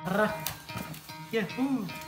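Short voiced exclamations, one of them "yeah", over light scraping and clicking of corrugated cardboard box flaps being handled.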